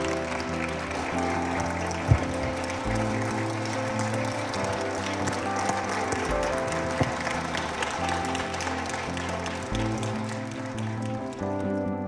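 Audience applauding over soft background music, whose low chords change every few seconds. The applause fades out near the end, leaving only the music. There is a single sharp thump about two seconds in.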